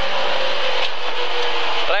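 Lada 2107 rally car's four-cylinder engine running at a steady speed, with road and wind noise, heard from inside the cabin; the engine note drops slightly near the end.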